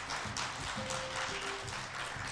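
Audience applauding, over background music with a few held notes.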